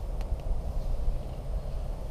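A pause in speech with a steady low rumble and a couple of faint clicks.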